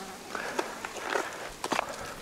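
Shoes and hands scuffing and tapping on rough rock while scrambling along a ridge: a handful of short scrapes and taps.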